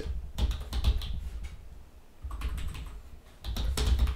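Typing on a computer keyboard: two short runs of keystrokes with a brief pause about two seconds in.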